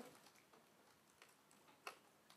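Near silence: room tone with a few faint ticks and one short click just before the end.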